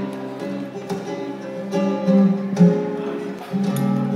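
Two flamenco guitars playing a tangos introduction, mixing strummed chords with picked notes.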